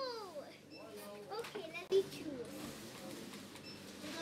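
A child's voice, quiet indistinct speech and vocal sounds, with a brief louder sound about two seconds in.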